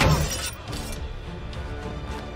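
Film soundtrack: a sharp crash, like something shattering, right at the start, over an orchestral score that carries on steadily afterwards.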